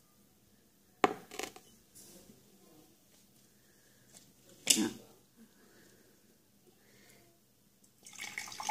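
Glassware and utensils being handled: two light clinks about a second in, then a sharper clink with a brief ring near the middle, with faint handling noise between.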